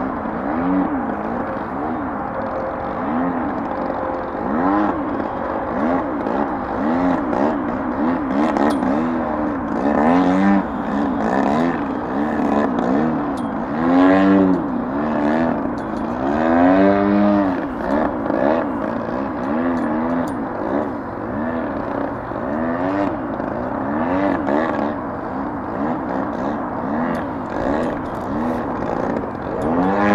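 GP-123 gasoline engine and propeller of a large radio-controlled Extra 300X aerobatic plane in flight, a steady drone whose pitch swings up and down over and over as the plane passes and maneuvers. It grows louder on several close passes in the middle.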